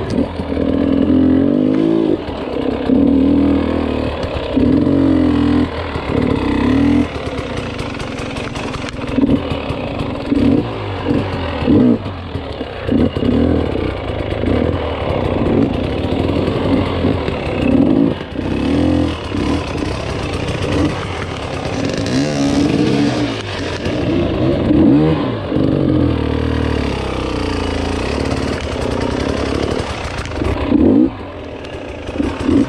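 Dirt bike engine revving in short throttle bursts, its pitch rising and falling again and again, as the bike crawls up a rocky trail.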